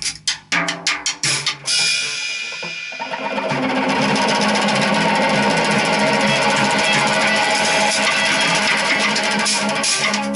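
Free-improvised duo of drum kit and semi-hollow electric guitar. Quick, sharp drum strokes open the passage; after about two seconds it becomes a dense, steady wash with sustained guitar notes through it.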